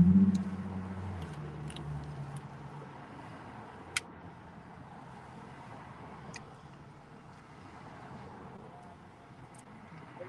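Quiet inside a parked car: a low hum fades away over the first few seconds, leaving faint background noise. A sharp click comes about four seconds in, with a couple of fainter clicks later, as the phone is settled on its dashboard stand.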